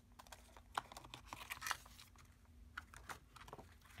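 Faint, irregular clicks and crinkles of clear plastic stamp sheets and their plastic packaging being handled.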